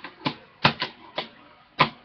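Hard plastic card holders clicking and knocking as they are handled, about five sharp clicks at uneven intervals, the last near the end among the loudest.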